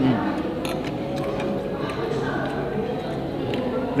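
Spoons and forks clinking against plates a few times, over a steady background of voices.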